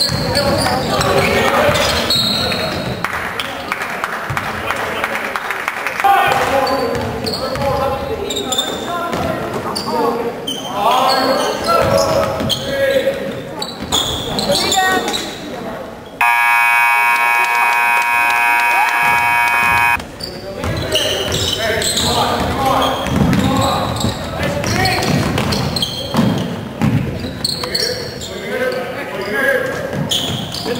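Basketball game in a gym: the ball bouncing on the hardwood floor among spectators' voices. About halfway through, the gym's scoreboard buzzer sounds one steady blast lasting almost four seconds and cuts off sharply.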